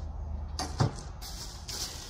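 A single sharp knock a little under a second in, then a faint rustling handling noise, over a steady low hum.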